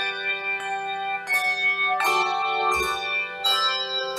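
Handbell choir playing a piece, each stroke a chord of struck handbells that keeps ringing, with a new stroke about every three-quarters of a second.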